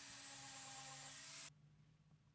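Electric sander running faintly on the wood, a steady hiss with a low hum, cutting off abruptly about one and a half seconds in.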